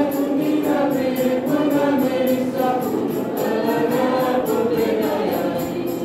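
A youth choir singing a gospel song in the Kewabi language, several voices together holding long, gliding notes, over a steady high percussion beat of about three strokes a second.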